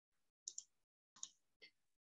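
Near silence broken by four faint, short clicks: two close together about half a second in, then one a little past one second and another near the end.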